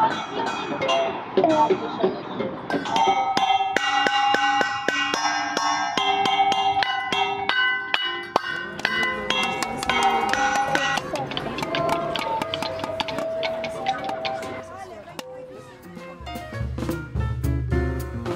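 Children's voices, then an irregular run of knocks and struck notes, some ringing on at a steady pitch, from homemade percussion instruments such as plastic bottles and wooden frames hit with sticks. Near the end a music track with a heavy bass beat comes in.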